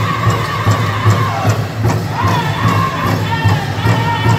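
Powwow drum group: several singers striking one large drum in a steady beat while singing a high-pitched song together, with crowd noise around them.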